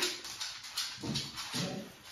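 A dog making two short, soft vocal sounds, after a sharp click right at the start.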